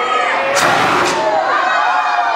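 A crowd of children shouting and cheering, many voices overlapping, with a brief louder rush of noise about half a second in.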